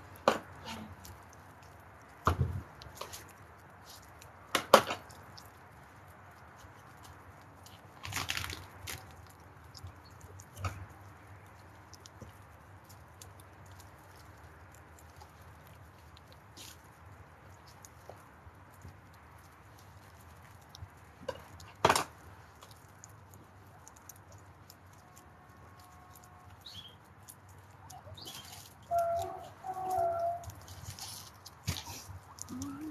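A herd of guinea pigs nibbling vegetables, a faint steady crunching. It is broken now and then by a few sharp knocks and chops from food being handled at a table. The loudest knocks come about five seconds in and about twenty-two seconds in.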